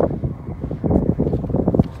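Wind buffeting a phone's microphone in uneven gusts.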